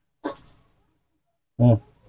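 A baby monkey gives one short, hissy cry about a quarter second in.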